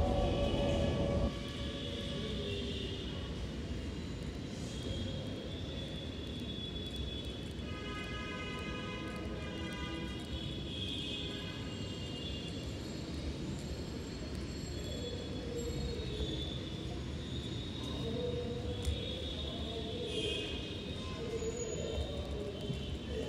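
A Dhaka Metro Rail train running through the station, heard as a steady low rumble, with a louder rush in the first second or so and high, even ringing tones around the middle.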